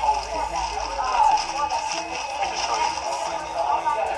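Background music mixed with other people talking in a loud, busy restaurant.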